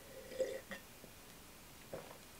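Quiet sips of wine from a glass: a soft slurp and swallow about half a second in, followed by a faint click.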